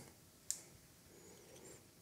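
Near silence, broken by a single short click about half a second in: the power button of a Bafang e-bike display's handlebar remote.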